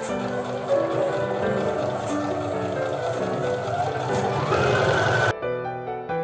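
Domestic electric sewing machine stitching under soft piano background music. Its motor whine rises in pitch about four seconds in, then the machine sound stops suddenly about five seconds in, leaving only the music.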